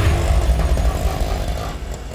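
Auto-rickshaw engine running as the three-wheeler drives up a narrow lane, a loud low rumble that eases off near the end.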